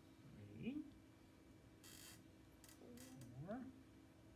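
Dry-erase marker squeaking faintly on a whiteboard as bead outlines are traced: two short rising squeaks, about three seconds apart, with a few light taps between them. A faint steady hum underneath.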